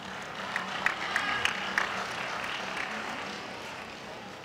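Arena crowd applauding with scattered claps, the applause slowly dying away.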